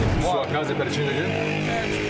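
A steady low motor hum, with a voice heard briefly in the first second.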